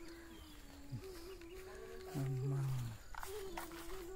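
A short, low animal call, under a second long, about two seconds in, over a faint steady hum.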